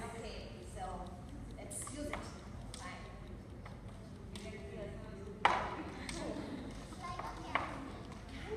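Faint, indistinct talk in a large hall, with a few sharp knocks, the loudest about five and a half seconds in.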